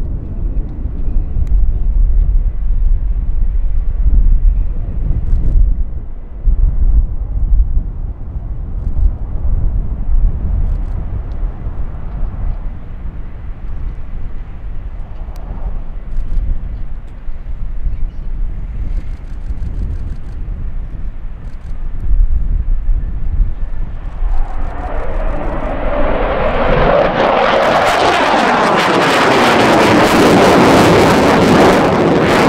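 MiG-29 fighter jet's twin turbofan engines: a low, distant rumble for most of the time, then a loud jet roar that builds over the last several seconds as the jet climbs steeply close by.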